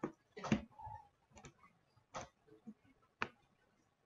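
Faint computer mouse clicking: about four sharp clicks spaced roughly a second apart.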